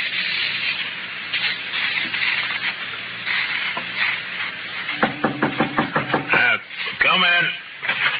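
A person's voice, heard as a quick run of short pulses about five seconds in and then a wavering sound near the end, over a noisy background.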